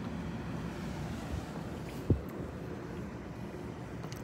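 Steady outdoor background noise, a low rumble with a faint hiss, with a single short thump about two seconds in.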